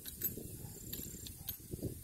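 Wind buffeting the phone's microphone as a low rumble, with a few light clicks.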